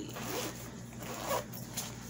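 A backpack's zipper being pulled open, the slider running along the teeth with a rasping sound.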